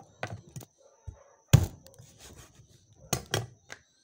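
Knife chopping down on a cutting board while trimming chicken feet: a few separate thuds, the loudest about a second and a half in, then two close together near the end.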